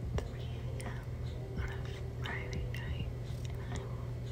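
A woman whispering softly, with a few small clicks, over a steady low hum.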